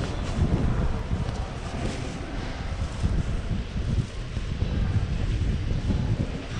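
Wind buffeting the camera's microphone outdoors: an uneven, gusting low rumble with faint street noise beneath.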